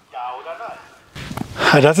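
A man's voice: a faint, brief bit of voice near the start, then clear speech begins near the end.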